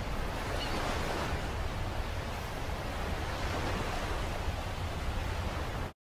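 Steady rushing noise of ocean surf, even throughout, cutting off abruptly just before the end.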